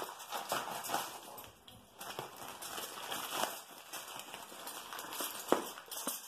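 Clear plastic wrapping crinkling and rustling in irregular bursts as it is handled and pulled open, with one sharp knock about five and a half seconds in.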